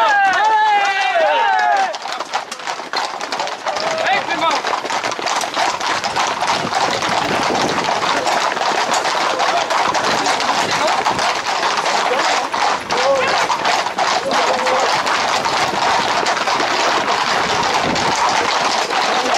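A pack of Camargue horses' hooves clattering fast on an asphalt road, a dense run of rapid knocks, under the shouts of people running alongside. A loud wavering, falling cry is heard during the first two seconds.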